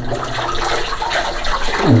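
Spring water running steadily from a pipe in the cave wall and splashing into a basin.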